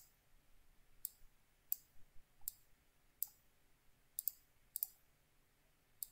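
Computer mouse buttons clicking: a faint series of short, sharp clicks about one every second, a couple of them in quick pairs.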